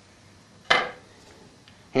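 A single sharp metallic clink about three-quarters of a second in, fading quickly: small metal parts of a pump shotgun's magazine tube being handled.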